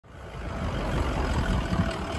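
Low, steady rumble of a pickup truck's engine running, fading in over the first half second.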